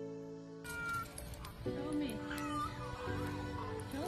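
Male Indian peafowl (peacock) calling, loud wailing meow-like cries that fall in pitch, twice, heard over background music.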